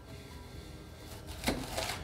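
A kitchen knife cuts through a raw cauliflower head and strikes a wooden cutting board once, sharply, about one and a half seconds in. Faint background music plays underneath.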